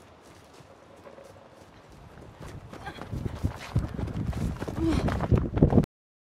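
Running footsteps through forest undergrowth, faint at first and growing louder and quicker-sounding as they close in, then cut off suddenly near the end.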